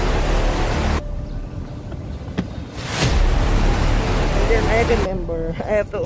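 Gusting wind buffeting a phone's microphone: a rough, rumbling rush that comes in two gusts and eases off between them.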